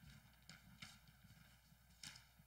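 Near silence: room tone with a few faint knocks of footsteps on a stage, about half a second and just under a second in.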